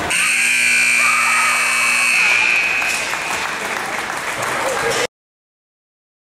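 Ice rink scoreboard buzzer sounding one steady, high tone for about two seconds, over general rink noise and voices; all sound cuts off suddenly about five seconds in.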